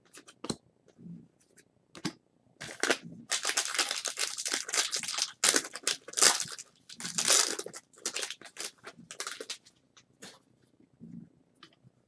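A foil trading-card pack wrapper being torn open and crinkled: a run of loud rustling, tearing bursts from about three seconds in until near ten seconds, with a few sharp clicks before and after.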